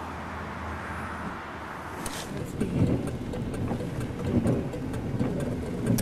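Steady cabin noise of a running car heard from inside. From about two seconds in there are scattered clicks and rustles, with faint muffled voices under them.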